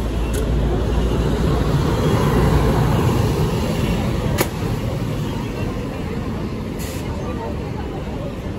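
City street traffic: a motor vehicle's low engine rumble swells to its loudest about two to three seconds in, then eases off. A sharp click comes a little after four seconds, over the chatter of people nearby.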